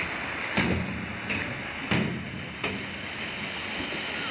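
Footsteps on a metal diamond-plate footbridge deck, about one step every two-thirds of a second, over the steady rush of river water.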